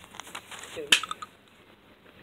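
A short vocal sound, then a single sharp click about a second in, followed by a couple of faint ticks.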